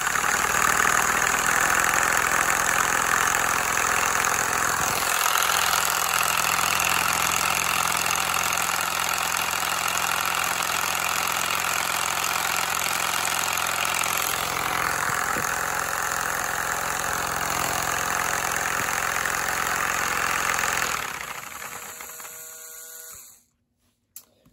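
A handheld LEGO electric motor driving a two-cylinder LEGO vacuum engine through a gear, running steadily to work olive oil into the freshly lubricated cylinders. The sound shifts slightly about five seconds in and again around fourteen seconds, then winds down and stops near the end.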